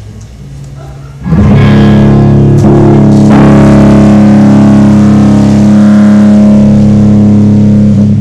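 Live rock band playing: after a brief lull, loud electric guitar chords ring out over bass about a second in and hold steadily.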